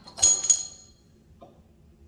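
Swing-top glass bottle being flipped open: the stopper and its wire bail clink twice in quick succession against the glass neck, ringing briefly. A faint tap follows about a second and a half in.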